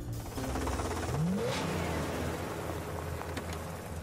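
Cartoon vehicle sound effect: an engine-like rush with a short rise in pitch about a second in, over a steady low hum.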